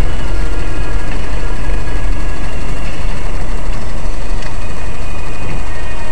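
Loud, steady low rumble of a car driving, with engine and road noise heard inside the cabin through a dashcam's microphone.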